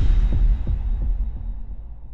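Logo-intro sound effect: a deep bass boom as a rising swell cuts off, followed by a few low pulses that fade away.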